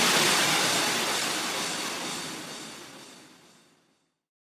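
A wash of white-noise hiss, the tail of an electronic dance track, fading steadily away to silence about three and a half seconds in.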